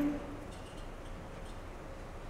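A female singer's held note cuts off a moment in, followed by a quiet pause of faint room tone.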